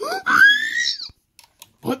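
A person's high-pitched squeal that rises sharply, then holds for about a second. A couple of faint clicks follow.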